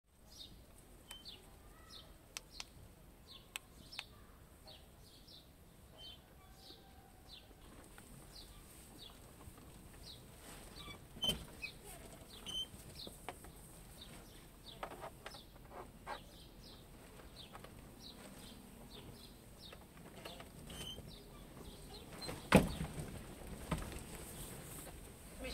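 Small birds chirping in the background: many short, high chirps, each gliding downward in pitch, repeating throughout. A couple of sharp knocks stand out, one about halfway and a louder one near the end.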